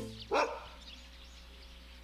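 A single short animal call, rising then falling in pitch, about a third of a second in, followed by faint steady background noise.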